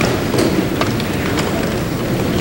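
Hearing-room background noise: a steady low rumble with a few scattered light clicks and knocks as people move about at the committee dais.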